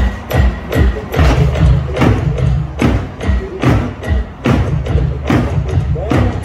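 African hand drums played in a steady, driving rhythm of deep strokes and sharper slaps, about two to three main beats a second with lighter strokes between.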